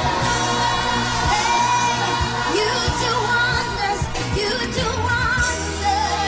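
Live gospel praise song: women singing into microphones over amplified instrumental backing with a steady beat.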